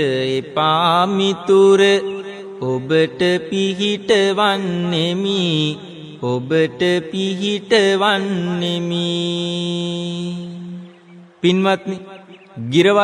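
A Buddhist monk chanting Sinhala verse in the kavi bana style: one man's voice singing long, wavering melodic lines. Near the end it holds one long note that fades out, then starts again after a brief gap.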